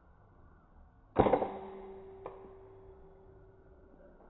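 A PCP air rifle shot about a second in: a sharp crack, then a steady ringing tone that slowly fades, with one faint click about a second after the shot.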